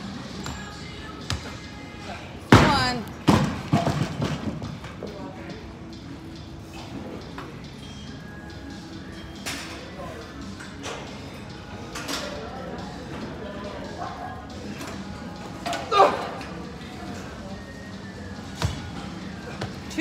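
A loaded barbell dropped onto the gym floor: a heavy thud about two and a half seconds in, a second thud just after as it bounces and settles, and another thud near the end, over background music and voices.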